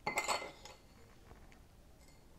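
A metal spoon clinking against a ceramic dish while spooning sprinkles: a quick run of clinks with a brief ring in the first half-second or so.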